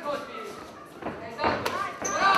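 Shouting voices from the corners and crowd, with a few sharp thuds in the second half as the fighters trade punches and kicks in the cage.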